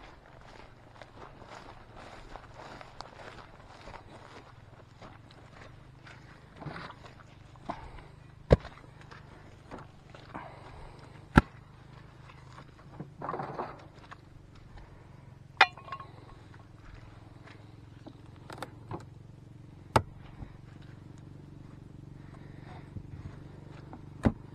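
Footsteps crunching through dry grass, with a few sharp clicks, the loudest about eight and eleven seconds in.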